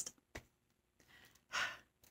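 A woman breathes out in a short sigh about one and a half seconds in, after a small mouth click.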